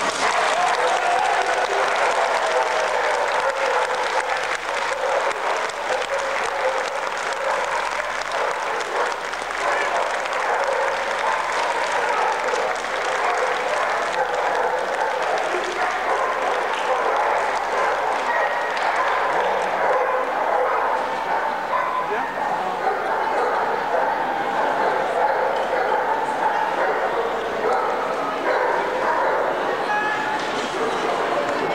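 Dogs barking again and again over steady crowd chatter in a large hall.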